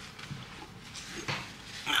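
Faint rustling of a paper towel being handled, in a few short soft bursts, with speech starting at the very end.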